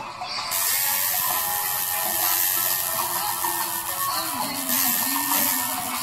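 Tattoo machine buzzing steadily as the needle works ink into the skin, starting about half a second in.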